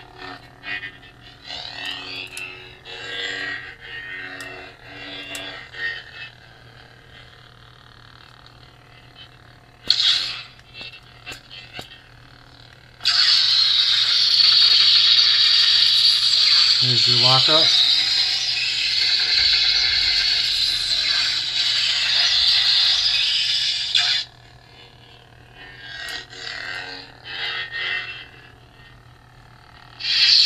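Lightsaber sound-board effects through the hilt's small speaker: a steady electronic hum that wavers in pitch with swings. Partway through, a loud, sustained crackling buzz, the blade-lockup effect, runs for about eleven seconds and then cuts off sharply.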